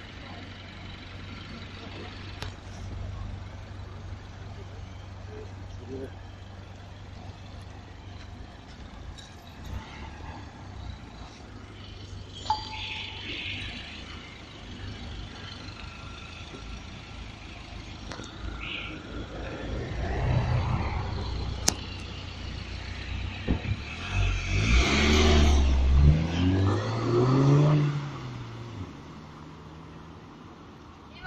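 A car engine running with a low steady hum, then from about twenty seconds in passing vehicles grow louder. The loudest comes near the end, its engine note rising and then falling away.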